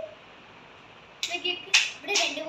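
About a second of quiet room tone, then a short burst of voice and one sharp click, the loudest sound, just before the end.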